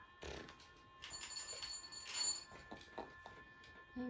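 A faint electronic chime of several steady high tones held together, growing louder about a second in and easing off after about two and a half seconds, with a few light knocks underneath.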